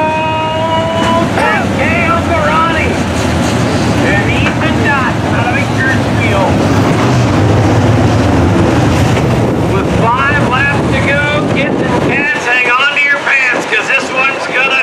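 A pack of IMCA dirt-track modified race cars running at speed past the grandstand, their engines revving in a dense roar. One engine note climbs at the start. The heavy low rumble drops away about twelve seconds in as the pack moves on.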